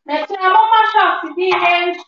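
A voice singing a melody, holding one note steady near the end.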